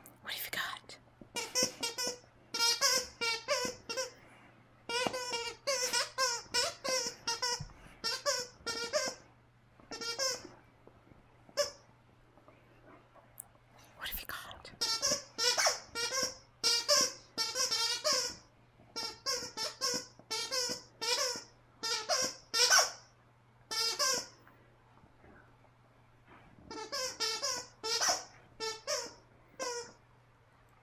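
A dog chewing a plush chicken squeaky toy, working the squeaker over and over: runs of rapid high squeaks, several a second, broken by short pauses.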